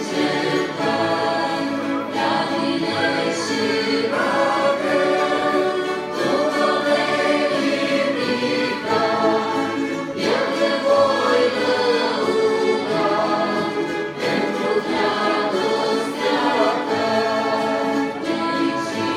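A choir singing slow, held notes with an orchestra accompanying, in a sacred style.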